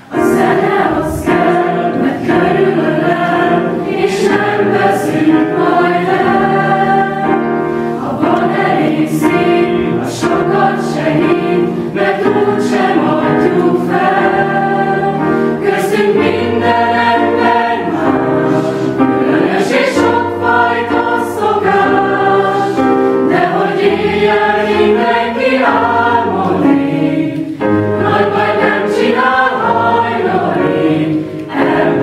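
A mixed school choir singing a piece together, led by a conductor. The voices come in all at once right at the start and hold a full, steady sound from then on.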